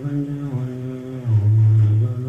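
A deep male voice chanting a Buddhist mantra in long, held notes. About two-thirds of the way through it steps down to a lower, louder note.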